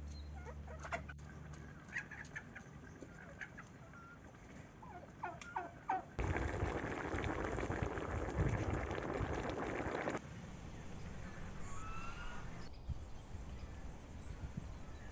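Chickens clucking and calling in a pen, several short calls over the first six seconds. Then, for about four seconds, the loudest part: coconut milk boiling hard in a wide wok over a wood fire. A few faint bird chirps come near the end.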